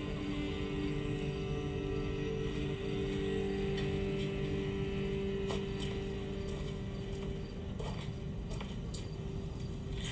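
Film soundtrack music of low, steady held notes that thin out near the end, with a few faint clicks in the second half.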